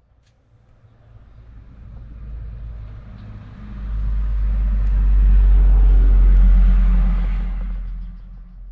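Low engine rumble of a passing motor vehicle, swelling to a peak about five to seven seconds in and then fading.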